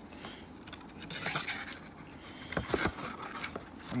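Faint handling noises: scattered light clicks, taps and brief scrapes of card packs and boxes being moved about on a table.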